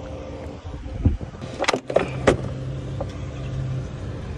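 A car engine running with a steady low hum, joined by a few sharp knocks and clicks around the middle.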